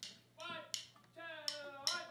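A handful of sharp clicks, like finger snaps or taps setting a tempo, over a few soft sustained string notes from the band, one sliding up in pitch near the end.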